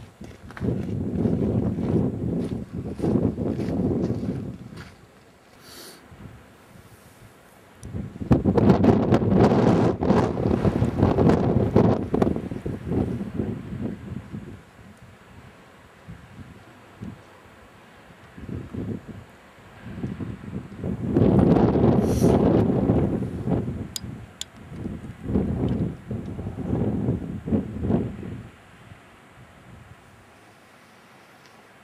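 Wind gusting against the microphone: low rumbling surges lasting a few seconds each, with quieter lulls between them.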